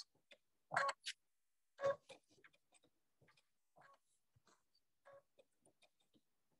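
Sewing machine sewing a blanket stitch slowly around a tight curve, heard as faint, separate clicks and knocks, one stitch at a time, the two loudest about one and two seconds in and fainter ones after.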